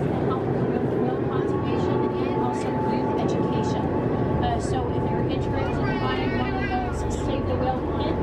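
Steady low drone of a whale-watch boat's engines heard inside its enclosed passenger cabin, under the chatter of many passengers.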